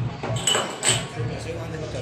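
People talking in the background, with two short light clinks about half a second and a second in.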